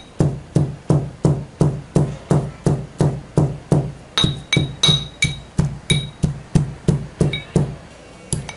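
Pestle pounding fresh guava leaves in a small mortar, crushing them to a paste. The strokes are steady and even, about three a second, and a few strokes near the middle give a short high ring.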